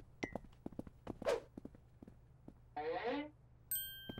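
Cartoon sound track: a run of light taps in the first half, then a short voiced murmur with falling pitch about three seconds in. Just before the end comes a bright, ringing chime-like 'ting' sound effect.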